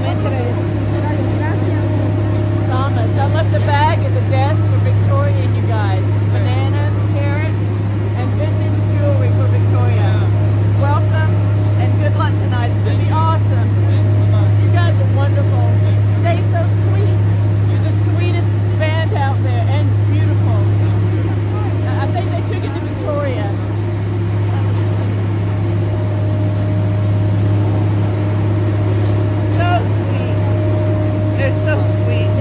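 Several people chatting close by over a loud, steady low hum.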